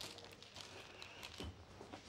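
Quiet room tone with a few faint clicks and rustles, one about a second and a half in.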